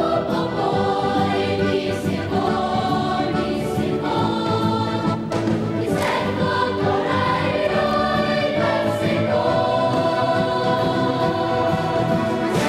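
A large children's choir singing a Welsh song in full voice, with instrumental accompaniment.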